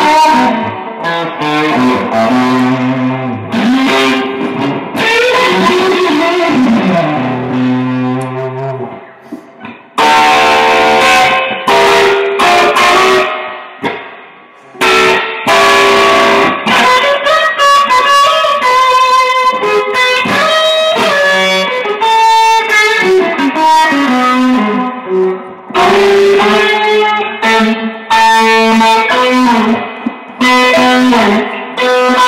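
Electric guitar played solo: melodic lead lines of held notes, with string bends sliding in pitch. The playing dies away briefly twice before picking up again.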